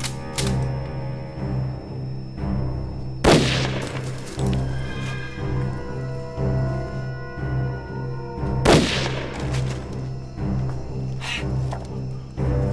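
Background music with low sustained strings, broken by two loud rifle shots a little over five seconds apart, each with a ringing echo tail: the first about three seconds in, the second near nine seconds.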